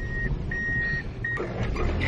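Car cabin road rumble while driving, with a flat high-pitched tone repeating about every 0.7 s, each lasting about half a second. The last tone is short and stops about a second and a half in.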